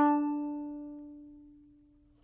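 The last held note of a short solo fiddle interlude between chapters, ringing out and fading away over about two seconds.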